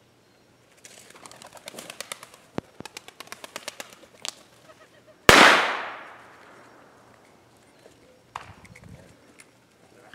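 A bird flushing from cover with a rapid flurry of wingbeats, then a single loud gunshot about five seconds in that rings out and fades over a second or so. These are the flush and shot of a bird-dog training flush, with the dog holding its point.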